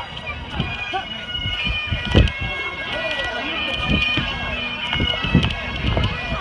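Bagpipes playing steady held notes, with loud low thumps of the phone being handled and carried over the grass, the heaviest about two seconds in.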